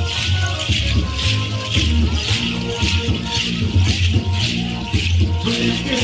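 Dance music led by rattles shaken in a steady beat, over a deep low note that repeats with the rhythm.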